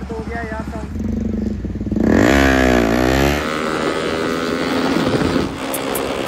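Motorcycle engine revved hard once, its pitch sweeping up and back down over about a second, then running on more steadily.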